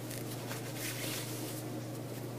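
Quiet room tone with a steady low hum and faint rustling of a silk necktie being pulled around a knot.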